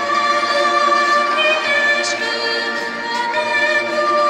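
A girl singing through a handheld microphone and the hall's PA, holding long notes that move from pitch to pitch.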